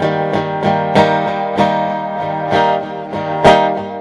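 Acoustic guitar strummed in an even rhythm, about three strums a second with the chords ringing on, one harder strum near the end: the instrumental opening of a slow ballad, before the singing begins.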